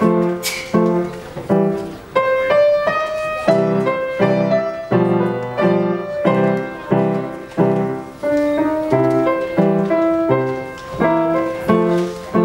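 Upright piano played solo: a melody in the right hand over low chords struck about twice a second, in a steady, even rhythm.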